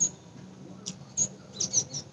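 A few brief, high-pitched chirps, with a sharp click at the start and a fainter click partway through, over a low steady hum.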